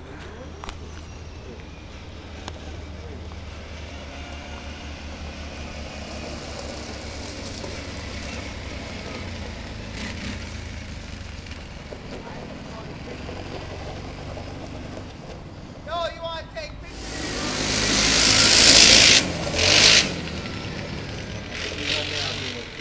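ATV (quad bike) engine running at a low idle, then a loud rush of noise for about three seconds near the end as it revs and pulls away.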